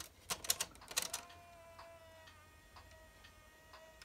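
A DVD being pushed into a slot-loading disc drive: a few sharp clicks as the drive draws the disc in, then the disc spinning up with a steady whine and faint ticks about twice a second.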